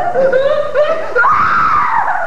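A young woman's high-pitched wailing cry, a comic stage show of distress, rising about a second in into a long squeal.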